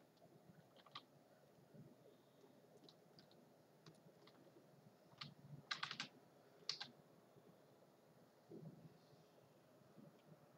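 Faint, scattered computer-keyboard clicks, a few single keystrokes with a quick run of them about six seconds in and another just after.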